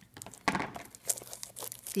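Plastic shrink-wrap being picked at and peeled off a small cardboard box: a run of irregular crinkles and crackles, loudest about half a second in.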